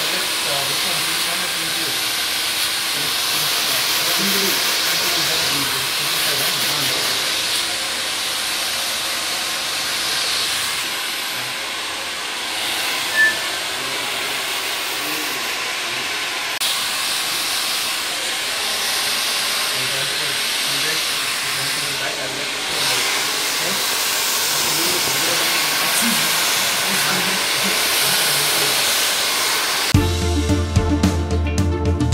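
A 2000-watt CHAOBA hand-held hair dryer blowing a steady rush of air while a round brush styles the hair, the rush dipping briefly now and then as the dryer is moved about the head. A brief click about 13 seconds in.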